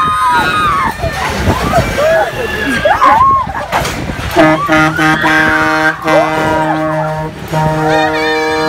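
Riders on a swinging pirate-ship amusement ride yelling and shrieking, their voices sliding up and down in pitch. About halfway through, a steady low humming tone starts under the voices, cuts out briefly, and comes back.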